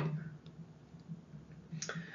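The tail of a spoken word at the start, then a low steady hum with a few faint clicks and one sharper click near the end.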